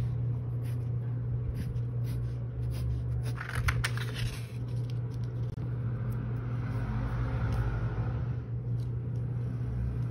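A steady low hum runs throughout, with small paper-crafting handling sounds on top: a quick cluster of snips and scrapes about three and a half seconds in as the paper is cut, and a soft rustle later as the paper pieces and glue bottle are handled.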